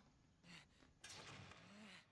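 Near silence, with only a very faint, indistinct sound starting about halfway through.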